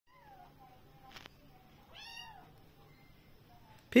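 A calico kitten gives one short, high-pitched meow about two seconds in.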